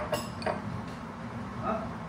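Table knife clinking and tapping against a plate and a cheese-spread jar as the spread is put on bread rolls: a sharp click at the start, then a few lighter taps.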